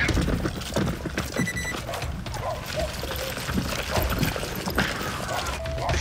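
Running footsteps on pavement picked up by a body-worn camera that jolts with each stride, with faint shouting in the distance.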